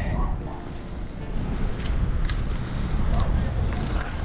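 Steady wind rumbling on the microphone on an open beach, with a few faint ticks.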